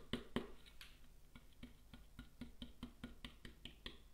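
Stencil brush dabbing paint through a stencil onto a plastic pot: light, even taps, about four a second.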